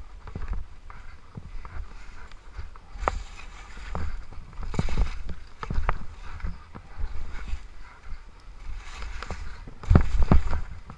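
Skis sliding and scraping through soft, chopped-up snow, with a hiss of spraying snow and irregular knocks as the skis hit bumps, over a low rumble of wind on the helmet camera's microphone.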